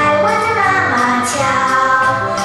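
A children's song with a child's singing voice over music, with short jingling shakes now and then.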